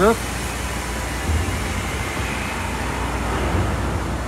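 Steady machinery noise in a road tunnel under construction: an even hiss over a low hum, the hum growing a little stronger after about a second.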